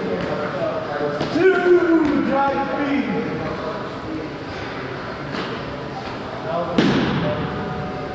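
Wrestlers grappling on a wrestling mat. About a second and a half in, a man's voice calls out wordlessly with a falling pitch, and near the end a body lands on the mat with a single loud thud.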